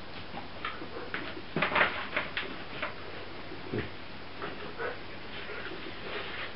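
Puppies rummaging in a plastic laundry basket of toys: irregular light clicks, knocks and rattles, busiest a couple of seconds in.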